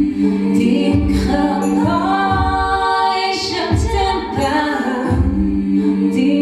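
Live wordless singing, layered like a small choir, over a held low keyboard note and a low pulsing beat.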